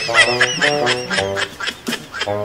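Playful comic background music: a bouncy line of short, evenly paced notes with squeaky, quack-like blips over it.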